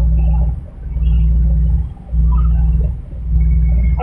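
Passenger ferry's engines droning inside the cabin: a deep, loud hum that swells and dips about every second and a half, with faint passenger voices in the background.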